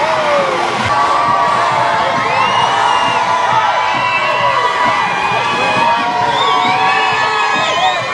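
Parade crowd shouting and cheering, many voices overlapping in rising and falling calls.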